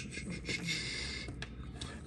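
Faint rubbing and a couple of small clicks from a 3D-printed plastic part being handled and pressed against an extruder body by hand.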